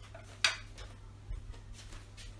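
A kitchen utensil set down with a sharp clink about half a second in, then two fainter taps, over a low steady hum from an induction hob heating an empty pan.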